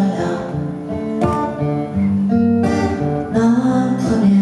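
Live song performance led by a strummed acoustic guitar, with held notes ringing under it. There are sharp strums about a second in and again near three seconds.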